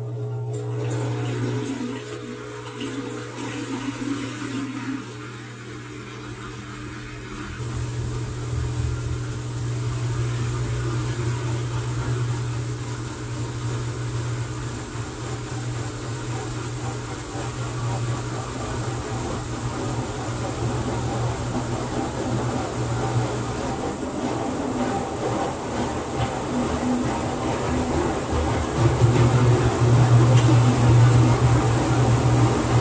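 TCL TWF75-P60 front-load inverter washing machine spinning near the end of its bedding cycle, with a steady low hum and the rush of water draining. The rushing grows louder about eight seconds in and again near the end.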